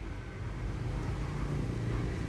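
Steady low outdoor background hum with an even noise haze and no distinct event.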